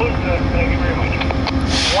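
An engine idling: a steady low rumble with a steady hum, and a short burst of hiss near the end.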